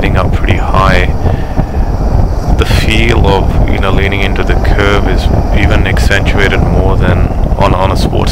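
A man talking over loud wind buffeting on the microphone and the running V-twin engine of a Suzuki V-Strom 650 motorcycle on the move.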